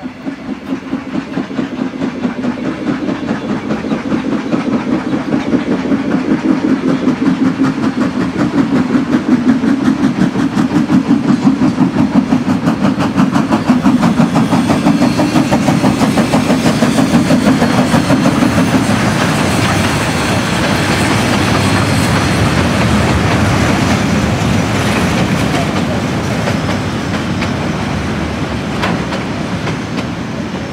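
NZR Ja class steam locomotive passing close by with its train, a loud, fast, regular pulsing as it goes by, giving way about two-thirds through to the steadier rolling rumble and clatter of the carriages.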